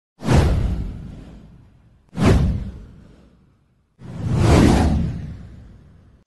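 Three whoosh sound effects from an intro title animation, each a loud, wide rush that fades away over a second or two. The first two hit suddenly; the third swells up before dying away.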